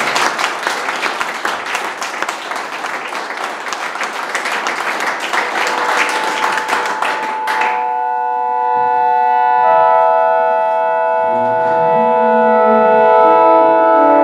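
Audience applauding. About six seconds in, sustained organ chords begin under the clapping, the applause cuts off abruptly a moment later, and held organ tones carry on, shifting to new pitches every couple of seconds: the opening of the organ piece.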